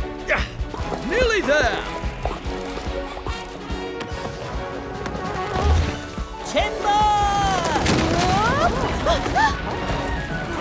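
Cartoon soundtrack: background music under wordless vocal exclamations from animated characters. Falling blocks crash and thud onto a pile about halfway through.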